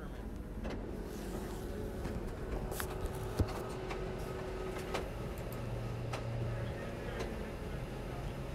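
Steady low hum of a hall's room tone with a few scattered clicks, and one sharp tap about three and a half seconds in.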